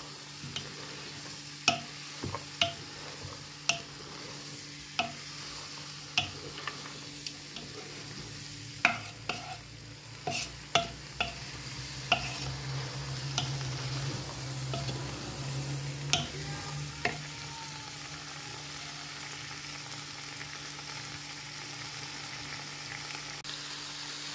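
Beans and chopped vegetables sizzling in olive oil in a pot, being sautéed to soften, stirred with a wooden spoon that knocks irregularly against the pot. The knocks stop about two-thirds of the way through, leaving the steady sizzle over a low hum.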